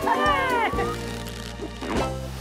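Cartoon background music with high, gliding squeaky cries over it in about the first half-second, then the music carries on alone.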